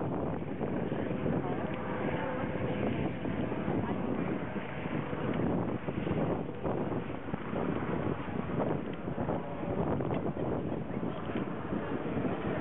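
Outdoor crowd ambience: wind buffeting the microphone as a steady rumbling noise, with faint, indistinct voices underneath.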